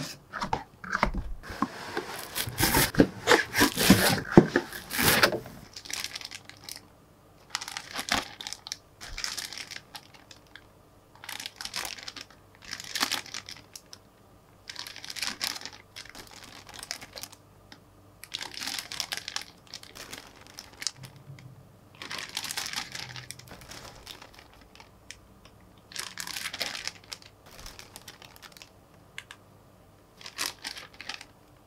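Clear plastic bags holding plastic model-kit runners crinkling as they are handled, in separate short bursts every two to three seconds. The first five seconds hold a longer, louder stretch of the same rustling handling.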